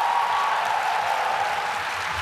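A large audience applauding: steady clapping that eases slightly toward the end.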